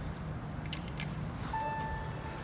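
A few light clicks from the elevator door being handled over a low steady hum, then about one and a half seconds in a steady high electronic tone starts and holds.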